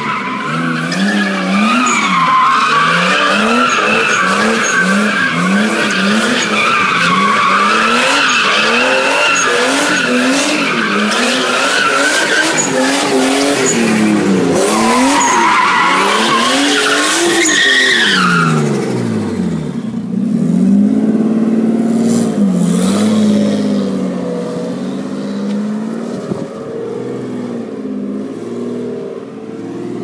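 Nissan Cefiro's turbocharged RB25DET straight-six revving hard, its revs bouncing up and down about one and a half times a second, while the rear tyres squeal continuously in a drift. About 18 seconds in, the tyre squeal stops and the engine drops back to a steadier, lower running note.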